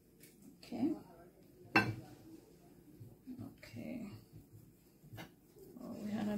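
Kitchen knife slicing through soft ground chicken and knocking sharply on a wooden cutting board, once loudly just under two seconds in and again more lightly near the end, with a few brief soft voice sounds in between.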